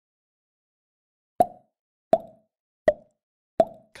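Four short, identical clicks, evenly spaced about three-quarters of a second apart, starting about a second and a half in. Each has a brief mid-pitched ring: an edited-in sound effect.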